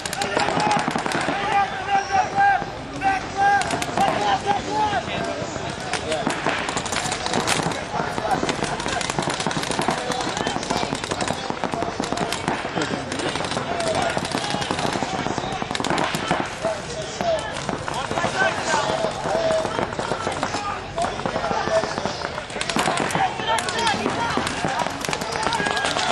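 Pump-action paintball markers firing many shots in quick, irregular succession, under shouting voices.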